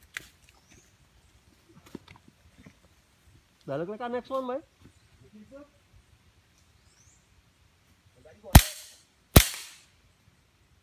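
Two rifle shots from a scoped rifle, fired upward into the tree canopy, sharp and loud, a little under a second apart near the end, each with a short fading echo.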